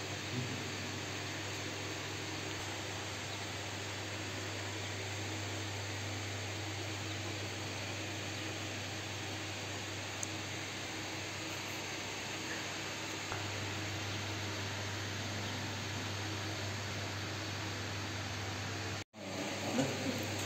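Steady hiss with a constant low electrical hum beneath it, briefly cutting out near the end.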